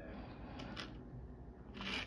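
Quiet room tone with a few faint, soft handling clicks.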